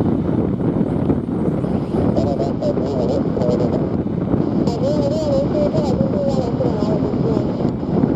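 Twin-engine Airbus A330 freighter taxiing with its jet engines at low thrust, a steady loud roar.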